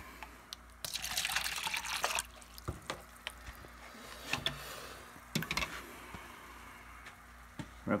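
Nutrient water splashing in plastic containers, a dense burst of about a second and a half, followed by scattered light plastic knocks and clicks.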